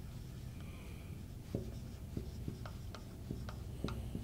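Marker pen writing on a whiteboard: faint short taps and strokes, starting about one and a half seconds in.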